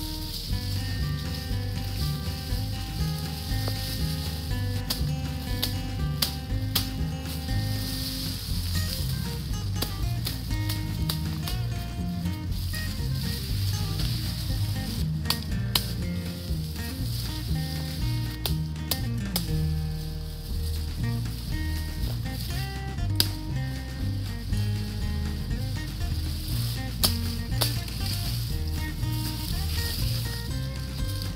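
Background music: a bass line stepping from note to note under a melody, with a steady beat of sharp percussive hits.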